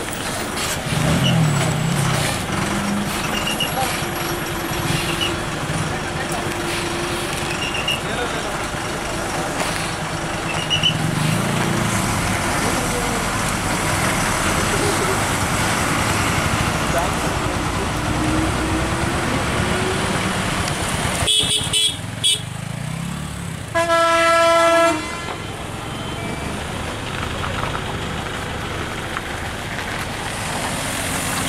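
Heavy vehicle engines running steadily as a Tamil Nadu state transport bus climbs around a tight hairpin bend, with road traffic around it. Late on, a couple of short horn beeps are followed by one loud, steady horn blast lasting about a second.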